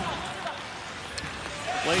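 Ice hockey arena ambience in a TV broadcast: a steady even hiss of game noise with a single faint click about a second in. A commentator's voice comes back in near the end.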